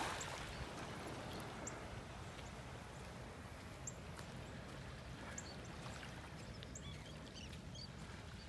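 Faint, scattered short calls from a large flock of terns flying past, over a low steady outdoor hiss.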